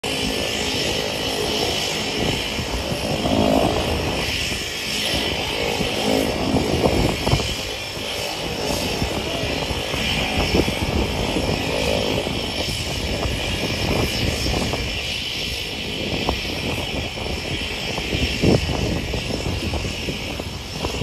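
Piper J3 Cub light aircraft's piston engine and propeller running at takeoff power through the takeoff roll and lift-off, a steady drone.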